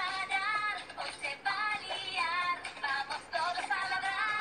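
Animated-series theme song in Spanish: a sung lead vocal with an electronic sheen over backing music.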